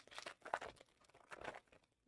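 Faint crinkling and rustling of trading-card packs and cards being handled, in a few short, irregular scrapes.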